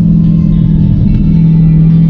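The Dodge Challenger SRT Hellcat's supercharged 6.2 L V8, heard inside the cabin, droning at a steady cruise. Its pitch drops slightly about a second in.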